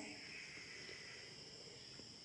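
Quiet room tone with a faint, steady high-pitched trill of crickets.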